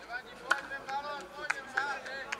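Football players shouting on the pitch, in short calls, with a few sharp knocks about half a second, a second and a half and near two seconds in.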